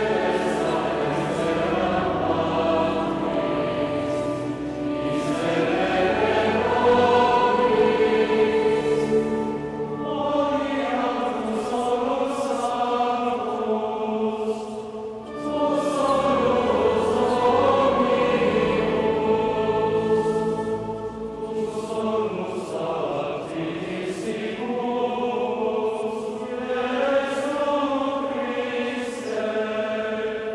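Massed youth choirs singing sacred choral music together, in long sustained phrases with short breaks between them, in a large, echoing church.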